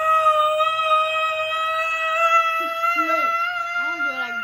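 A woman's single long, high-pitched wail, held for about five seconds and rising slightly in pitch, a cry of pain from the burn of an extremely spicy gummy bear.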